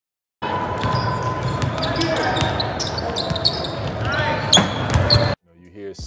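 Basketballs bouncing on a gym floor with people's voices in a large hall, a busy run of sharp knocks. It starts about half a second in and cuts off suddenly near the end.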